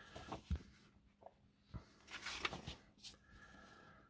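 Paper pages of an old magazine being turned and handled: faint rustling and a few soft taps, with the fullest rustle a little after two seconds in.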